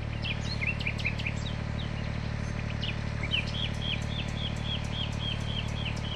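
A small bird calling: scattered short chirps, then from about halfway a quick run of repeated high down-slurred notes, about four a second, over a steady low background rumble.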